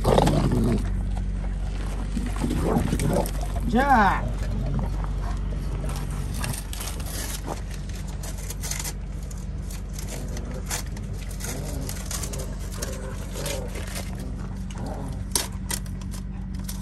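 A dog growling and whining in play in the first few seconds, one call rising and falling sharply about four seconds in, over a steady low hum. After that comes light scrubbing and rubbing as a chrome truck wheel is wiped with a cloth, with a few sharp clicks near the end.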